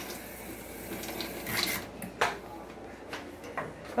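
A few light clicks and knocks of kitchen things being handled at the stove, the sharpest a little past halfway, over a steady low hiss.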